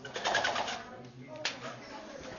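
A pull-down projector screen being pulled down over a whiteboard, rattling as it unrolls in the first second, then a single sharp click about one and a half seconds in.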